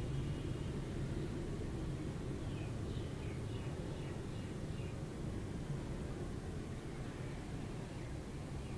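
Steady low background noise with no speech, and a few faint high chirps in the middle.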